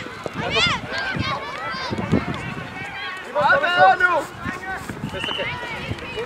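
Young players' high-pitched voices shouting and calling out on an outdoor football pitch, loudest just after the start and again about three and a half seconds in.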